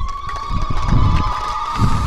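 Public-address microphone feedback: a steady, high-pitched howl that slides up to pitch and holds, over low rumbling noise.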